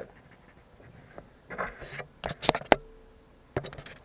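Handling noises: a cluster of sharp knocks and clicks about two seconds in, then a few lighter clicks near the end, with a short faint hum between.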